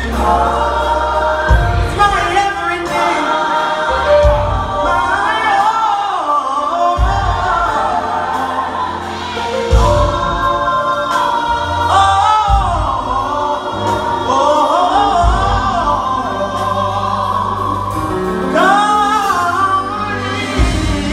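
Gospel choir singing, with instrumental backing and a deep bass line that changes note every second or two.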